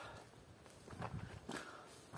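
Faint footsteps of a person walking on a forest trail, a few steps around the middle.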